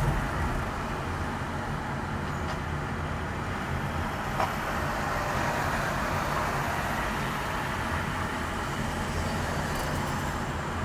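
Steady engine and road noise of a car driving in city traffic, heard from inside the cabin, with one short click about four and a half seconds in.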